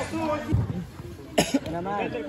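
Scattered voices of players, with a short low thump about half a second in and a cough about one and a half seconds in.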